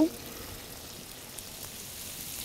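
Chorizo and onions frying in oil in a hot pan: a steady, even sizzle.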